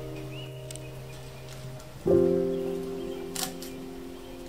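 Soft background piano music: a chord rings and slowly fades, and a new chord is struck about two seconds in.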